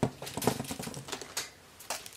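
A quick run of light clicks and taps from small plastic toy packages knocking together as they are handled, with one more click near the end.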